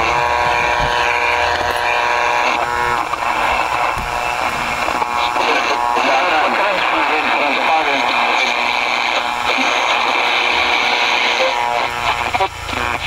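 Panasonic AM/FM pocket transistor radio playing a station through its small speaker: a steady tone for the first few seconds, then a voice talking over a hiss. The radio is powered again after its rusty battery terminal was dealt with.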